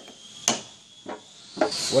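Lead hammer tapping a lathe chuck, two short knocks, the first louder, seating the chuck on its L00 long-taper spindle. Each tap draws the locking collar a little tighter.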